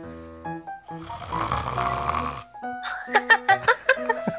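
A single snore, about a second and a half long, starting about a second in, over light background music.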